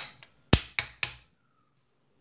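Small hard plastic pieces clicking against a clear plastic display case: three sharp clicks about a quarter second apart as the miniature parts that keep popping out are pressed back in.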